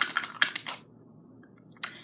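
Plastic cap of a small hair-colour stick clicking as it is pushed on and slips off again, several quick clicks in the first second: the lid will not stay on.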